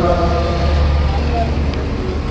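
A pause between lines of a group devotional chant in Arabic: the last sung note fades just after the start, leaving a steady low rumble and a few scattered voices until the chant resumes.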